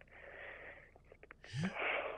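A person's breathing at a close microphone between sentences: a soft exhale, a few faint mouth clicks, then a short breathy sound with a brief rising hum about one and a half seconds in.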